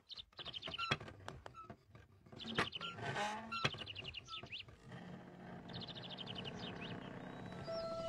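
A small bird chirping in several quick runs of high notes, with scattered light clicks. Soft music fades in about halfway through and grows louder toward the end.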